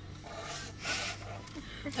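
A short, breathy sip of water from a cup about a second in, with faint murmuring voices and a low steady hum.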